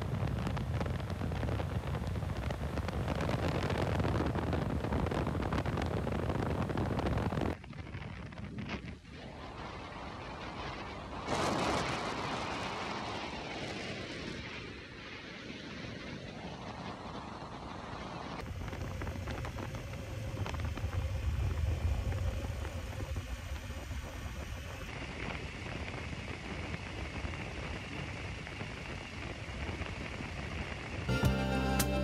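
Wind rushing over the microphone with the motorcycle's engine and tyres at highway speed. The sound changes abruptly several times as short clips follow one another.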